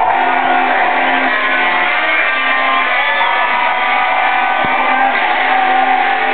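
Loud electronic dance music from a DJ set over a club sound system, with held melodic notes changing about once a second. The recording sounds dull, with the high end cut off.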